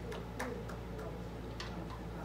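A string of light, sharp ticks, mostly about three a second with a short gap in the middle, over a steady low hum.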